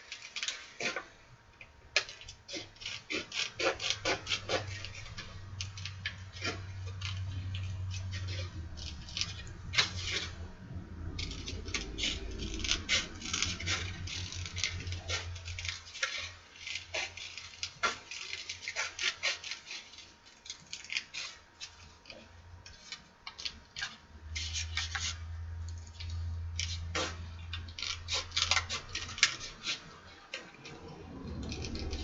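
Scissors snipping through paper in runs of small quick clicks, with paper rustling as it is handled. A low hum comes and goes underneath.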